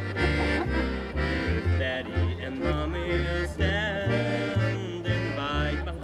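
Live acoustic gypsy-swing trio of trumpet, accordion and plucked upright double bass playing a tune. The bass walks along about two notes a second under a melody with vibrato.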